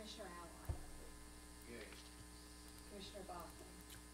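Steady electrical mains hum with faint, distant voices in the background. A single low thump comes a little under a second in.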